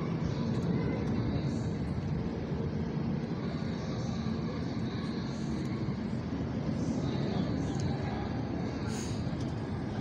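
Steady low rumble of outdoor city background noise, with faint voices in it.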